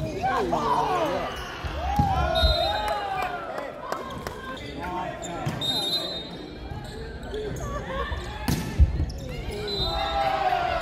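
Indoor volleyball play echoing in a large sports hall: players' voices and short squeals from shoes on the court floor, with a sharp ball strike about two seconds in and another, the loudest, near the end.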